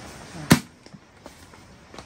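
A single sharp knock about half a second in, followed by a few faint taps.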